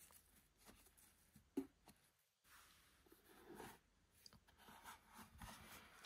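Near silence with faint handling noises as a lidded cardboard gift box is opened, the lid worked loose and lifted off. There is one light tap about one and a half seconds in.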